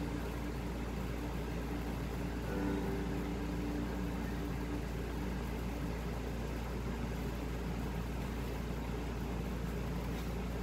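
A steady low hum with an even background hiss, unchanging throughout, with a faint brief tone about three seconds in.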